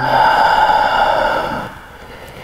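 A man's long, audible exhale, loud and close, fading away after about a second and a half.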